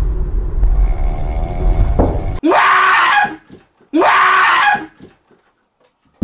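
Low train-car rumble, then two loud startled screams about a second and a half apart, each just under a second long, rising in pitch at the start and cut off abruptly.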